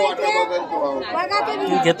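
Several people talking over one another in Marathi: market chatter.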